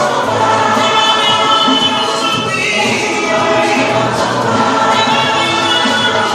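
A choir singing a joyful recessional hymn, many voices together, steady and loud with no break.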